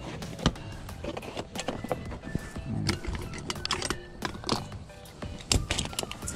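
Hand tools clicking and knocking against each other while the fabric of a tool backpack rustles as they are packed into its pockets. There is a sharp click about half a second in and another near the end.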